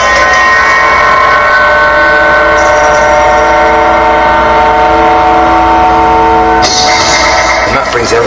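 A loud chord from a studio sampler played over the monitors, several tones held steady for about six and a half seconds before cutting off, followed by a short burst of hiss near the end.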